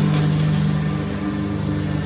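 Compact tractor engine running at a steady speed while its mower deck cuts grass, a constant engine hum.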